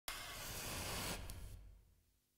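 A burst of steady hiss that starts suddenly and fades away in the second half.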